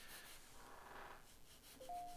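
Near silence with faint graphite pencil strokes on drawing paper, a soft scratch about half a second to a second in. A faint steady tone starts near the end.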